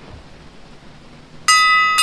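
A single bell is struck about a second and a half in, after a quiet pause, and rings on with several clear, steady tones.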